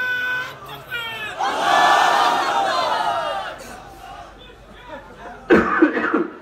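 A man's voice holding one long note through the PA, then a large crowd shouting a response together for about two and a half seconds, fading away. A man starts speaking near the end.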